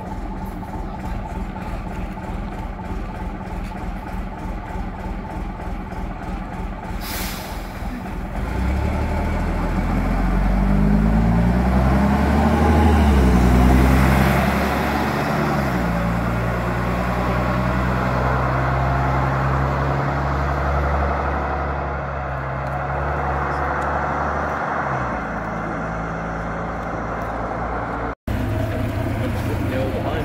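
Double-decker bus diesel engines: a steady throbbing engine with a short hiss of air about seven seconds in, then a bus pulling away loudly, its engine note rising several times as it works up through the gears before settling to a steady drone.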